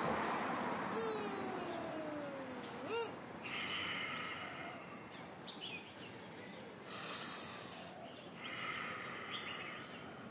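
Outdoor background noise with a falling whine over the first three seconds that ends in a sharp click, then two short bouts of high chirping.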